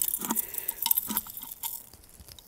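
Thin plastic bag crinkling and a fine metal chain clinking as jewelry is handled: a rapid scatter of small ticks and rustles that dies away about three-quarters of the way through.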